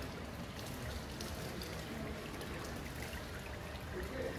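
Water from a marble pedestal fountain trickling and splashing steadily into its basin.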